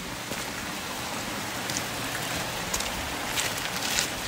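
Steady rain falling on wet stone paving, an even hiss with a few sharper drops standing out.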